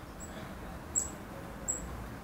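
Black-capped chickadee giving three short, very high, thin call notes, the loudest about a second in.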